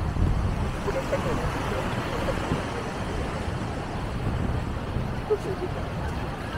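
Beach ambience: a steady rumble of wind on the microphone, with faint scattered voices of people in the distance.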